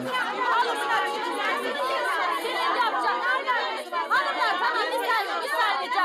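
Several women shouting over one another in a heated argument, their voices overlapping into a continuous din in which no single line can be made out.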